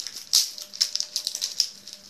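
Foil trading-card booster pack wrapper crinkling and crackling as it is torn open by hand, in quick irregular crackles.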